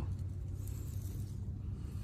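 Low, steady background rumble with a faint hiss and no distinct event.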